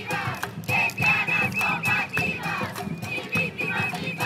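Batucada drumming in a steady, driving rhythm, with a crowd of women chanting and shouting over it.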